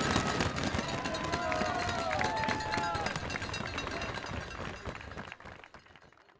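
Crowd sound at a race: voices and a few shouts over a noisy haze, with many short clicks, fading out near the end.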